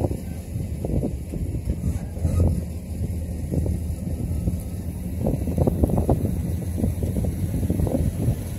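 Approaching engine of a slammed C10 pickup with a 6.0-litre LS V8 swap, heard over wind buffeting the microphone.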